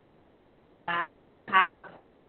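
A few brief syllables of a woman's voice heard through a video call, with pauses between them.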